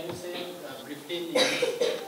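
A person coughing once, a short harsh burst about one and a half seconds in, between stretches of quiet speech.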